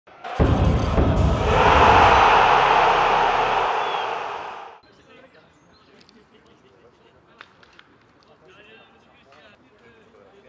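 Logo intro sound effect: a heavy hit with a deep low rumble and a swelling rush of noise that fades out about five seconds in. Then faint open-air ambience follows, with a few sharp knocks and distant voices.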